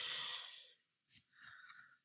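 A woman's sigh: one breathy exhale lasting about a second, followed by a faint, brief sound about a second and a half in.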